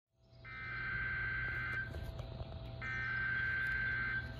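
Emergency Alert System SAME header data bursts from a NOAA Weather Radio: two shrill bursts of two-pitch digital data tones, each about a second and a half long, about a second apart, marking the start of a Required Monthly Test alert.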